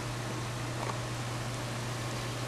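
Steady hiss with a constant low hum: the room and recording noise of an indoor camcorder recording, with a faint click a little under a second in.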